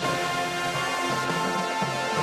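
Marching band playing, with brass holding sustained chords over percussion.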